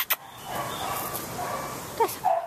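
Two sharp clicks at the start, then a young dog's soft vocalizing.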